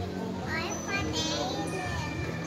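Young children talking in high voices, with music playing in the background.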